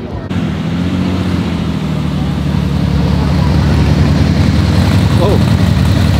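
A dune buggy's engine running close by: a steady low drone that grows slowly louder and sinks a little in pitch.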